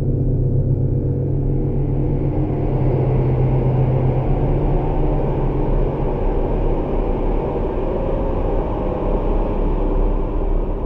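Dark, low rumbling drone laid over the footage as a horror soundtrack, with a hiss that builds in after about two seconds while the deepest held tones fade out about halfway through.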